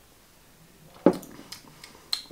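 A coffee mug set down on a cloth-covered table: one sharp knock about halfway through, then a few faint light clicks.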